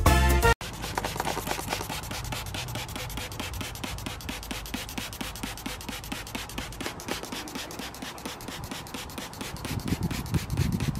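Loud background music for the first half-second, then a cut to a hand trigger spray bottle squirting over and over at a plastic garbage can: a rapid, even run of short sprays, several a second.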